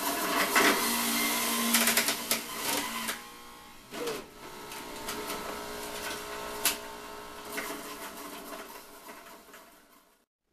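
Jack LaLanne electric centrifugal juicer running as carrots are pushed down its feed chute. It grinds loudly for the first three seconds or so, then spins on more quietly with a steady motor hum and an occasional knock.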